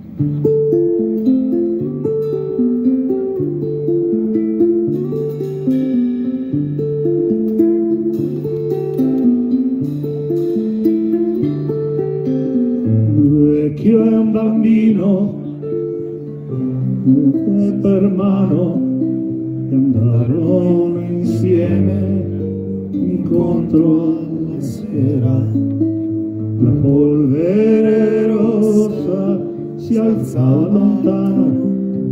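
A live band plays an instrumental passage. An acoustic guitar and an electric bass repeat a note pattern, then about halfway through the drums and fuller accompaniment come in and the music grows denser.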